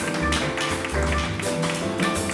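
Jazz piano trio playing an up-tempo tune live: Steinway grand piano chords, plucked upright double bass notes, and drum kit with cymbals.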